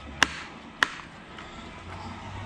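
Freshly bled Brembo hydraulic clutch lever on a KTM 300 dirt bike being worked to test its feel, giving two sharp clicks about half a second apart.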